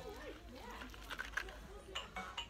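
A faint voice whose pitch slides up and down in the first second, followed by brief indistinct voices.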